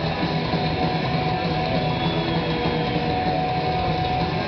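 Live black/thrash metal band playing a fast, dense passage: distorted electric guitars, bass and drums, loud and unbroken.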